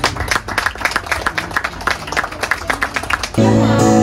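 A small audience clapping for a live band, as a run of irregular claps, for about three and a half seconds. Near the end it cuts suddenly to an acoustic guitar being strummed with a man singing.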